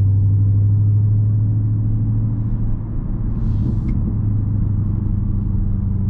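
A 2020 Dodge Charger Scat Pack's 392 (6.4-litre) HEMI V8 droning steadily at a light cruise, heard from inside the cabin. The level dips briefly about halfway through.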